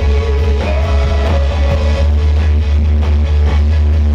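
Live rock band playing: electric guitars and drum kit over a heavy, steady low end, with a male voice singing a long, wavering line through the first half.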